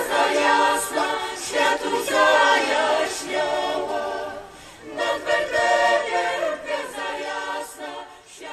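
Mixed choir of men's and women's voices singing a cappella, in sung phrases with a short pause a little past halfway before the next phrase begins.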